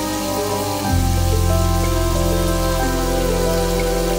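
Sizzling of king oyster mushroom slices frying in a pan, a fine steady crackle, under background music whose bass grows fuller about a second in.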